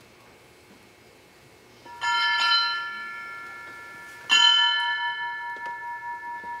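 A small hand bell rung twice, about two seconds apart, each stroke ringing on and slowly fading.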